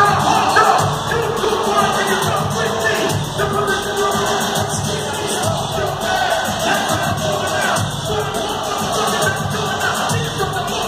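Live hip hop music over a concert PA in a large hall, with the crowd cheering and voices singing along, heard from far back in the audience.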